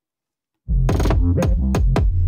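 Hip-hop drum beat played back from a DAW, starting about two-thirds of a second in: a sustained deep 808 bass with several sharp snare hits of a snare roll, here with the snare roll's Pultec-style EQ bypassed for comparison.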